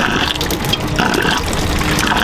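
Water rushing and splashing steadily in a boat's live well, churned by its circulating pump.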